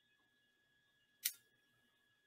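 Near silence with a faint steady electronic tone, broken once about a second in by a single short, sharp click.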